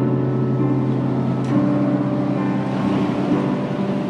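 Electronic keyboard playing held chords over a steady low note, the introduction to a worship song; the chord changes about a second and a half in.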